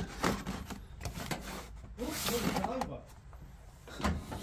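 Hands rummaging in a metal filing cabinet drawer: rustling card folders and papers with scattered light knocks, and a voice murmuring briefly about halfway through.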